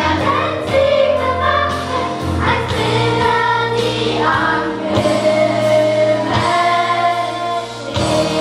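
Children's choir singing a song together over musical accompaniment.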